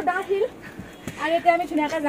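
A woman's voice talking, with a brief click about a second in.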